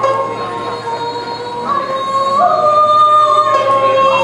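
Nanyin ensemble music: long held melody notes, doubled in octaves, stepping from pitch to pitch, as played by the dongxiao end-blown flute and erxian fiddle, with faint plucked pipa and sanxian strings underneath.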